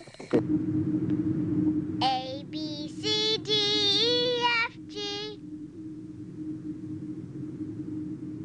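A high voice sings a short phrase of about five notes, some gliding and bending, from about two seconds in to past the middle, over a steady hum that runs on alone afterwards.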